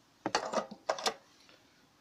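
Fuel-tank cap of a Honda Dio 27 scooter being screwed back onto the filler neck: two short bursts of ratchet-like clicking, the first about a quarter second in and the second around one second in.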